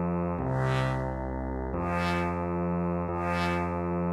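Synth brass sound playing a low bass line on its own, one held note after another, the notes changing about every second and a half.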